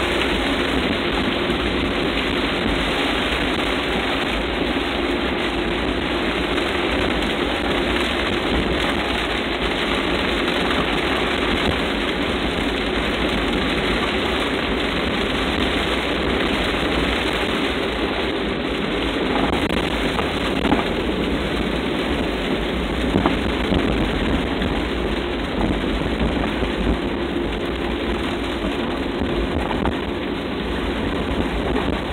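Rain falling on a car's windshield and body, heard from inside the cabin while driving, with the tyres on the wet road and the engine running underneath as one steady hiss and rumble.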